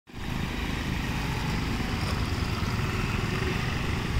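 Honda Activa scooter's small engine running steadily as the scooter rides slowly past at low speed.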